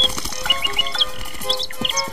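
Background score music with bird chirps: short, high twittering calls in several quick clusters over the steady music.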